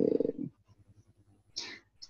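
A speaker's drawn-out hesitation sound, 'euh', trailing off into a creaky, rattling voice in the first half second, then a short breath about a second and a half in.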